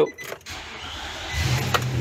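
Nissan van's engine cranking and quickly catching, then running, started from a portable jump starter pack. The engine turns over for under a second before it fires and settles into running.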